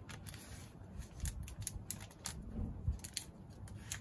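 Thin protective plastic wrap crackling in short, irregular clicks as it is peeled off a green iPad Air 4, with a soft low knock of the tablet being handled about three seconds in.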